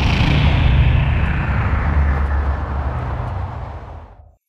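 Loud, deep rumbling sound effect with a hissing upper layer that slowly sinks in pitch, fading away near the end.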